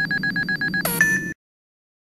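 Electronic editing sound effect that sounds like a phone ringing: a rapid warbling beep for about a second, then a quick sweep up to a short high tone. It cuts off abruptly into silence at about one and a half seconds.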